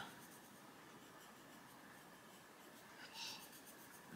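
Faint scratching of a Staedtler Ergosoft coloured pencil shading on paper, briefly a little louder just after three seconds in.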